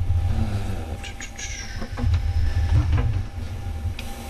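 Meeting-room handling noise: a low rumble with a few scattered knocks, and a brief high squeak that falls in pitch about a second in.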